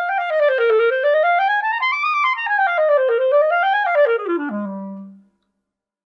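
A Buffet wooden B-flat clarinet playing solo: quick stepwise runs that climb to a high note about two seconds in, fall, climb again, and then drop to a low note held for about half a second before fading out.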